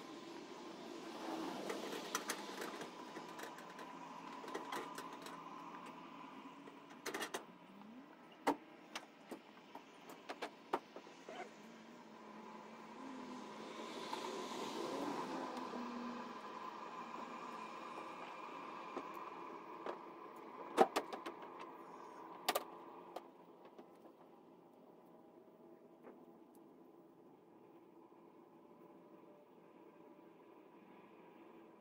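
Scattered knocks and clunks of someone climbing onto and working in a loaded pickup truck bed, over a low background hum, with a louder pair of knocks about two-thirds of the way through.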